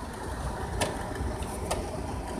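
Two light clicks about a second apart as hands handle an RC buggy, over a steady low hum.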